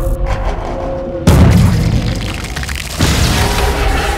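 Film explosion sound effects over trailer music: a sudden heavy boom about a second in, the loudest moment, fading slowly, then a second boom about three seconds in.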